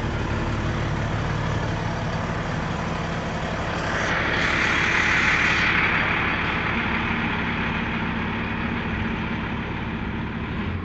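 MBTA Silver Line bus engine idling with a steady low hum. A loud hiss comes in about four seconds in and lasts about two seconds.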